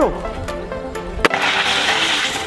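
A single sharp rifle shot about a second in. Straight after it comes a hiss lasting about a second as the pierced aerosol can of flammable propellant sprays out its contents, over background music.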